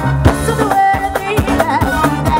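Live band music: a woman singing a wavering, ornamented melody into a microphone over an electronic drum kit keeping a busy beat of low, downward-sliding drum hits.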